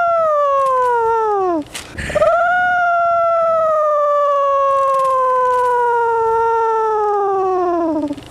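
A comic sad-trombone style 'wah-wah-wah-waaah'. A falling note ends about a second and a half in, then one long note wobbles at its start and sinks slowly in pitch for about six seconds.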